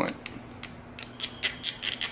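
Depth-adjustment wheel on a self-adjusting wire stripper being turned, clicking through its detents: a run of small sharp clicks that come faster in the second half.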